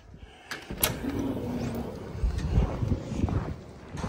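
An automatic glass door opening, with a couple of sharp clicks about half a second and a second in, then footsteps and low rumble as the person walks out.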